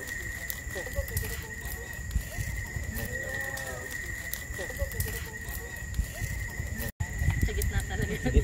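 Large log bonfire crackling, with faint chatter of people gathered around it and a steady high-pitched tone over everything. The sound drops out for an instant about seven seconds in.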